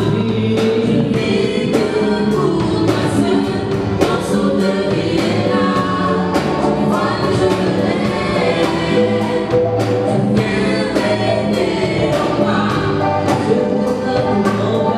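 Live gospel worship song sung by a small group of male and female voices together, accompanied by electric keyboard and drum kit playing a steady beat.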